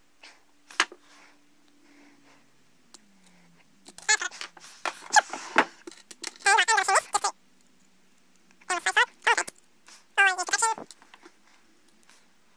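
A man's voice in several short wordless bursts, muttering or humming under his breath, with a single sharp click a little under a second in.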